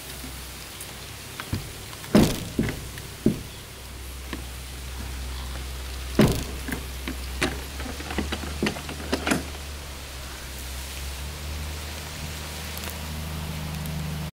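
Knocks and clicks from a wooden shed door with a metal pull handle and barrel latch being handled and shut: the loudest about two seconds in and again about six seconds in, with a few smaller taps up to about nine seconds, over a steady low hum.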